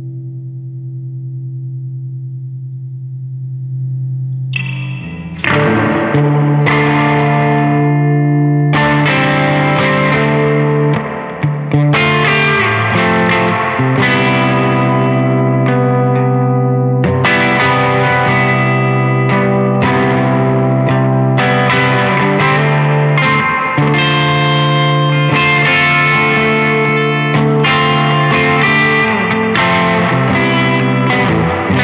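Electric guitar played through a Balthazar Cabaret MKII, a 15-watt EL84 tube amp. A held chord rings for the first few seconds, then strummed chords start about four and a half seconds in and carry on in a steady rhythm.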